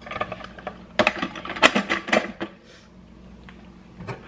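Plastic parts of a cold-press juicer clicking and knocking as they are fitted together, a quick run of clicks over the first two and a half seconds, then quieter handling.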